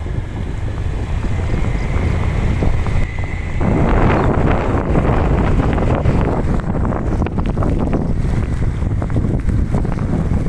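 Wind rushing over the microphone of a Honda Beat scooter moving through rain. It is a steady rumble that grows louder and fuller about three and a half seconds in.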